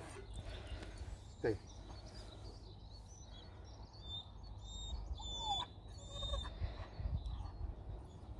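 Outdoor ambience with a low wind rumble on the microphone; for a few seconds in the middle, birds chirp in the background with short high calls.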